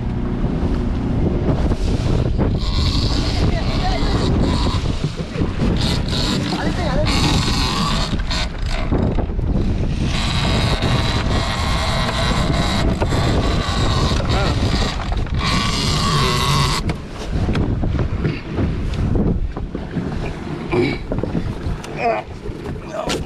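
Wind buffeting the microphone and water rushing and splashing along the hull of a small fishing boat under way, with a steady low rumble underneath; the hiss grows stronger for several seconds in the middle.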